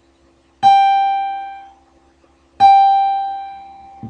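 A guitar's highest note, around 800 Hz, plucked twice about two seconds apart. Each note rings and fades over a second or so.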